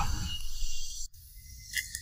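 A pause between spoken lines: faint low background hum that drops sharply about a second in, with a small click at the drop.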